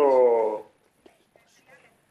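A man's voice over a phone line drawing out one hesitant syllable for about half a second, its pitch sliding down, then only faint scattered sounds.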